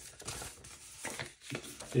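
Paper and packaging being handled and rustled, with a few soft clicks and taps of handling.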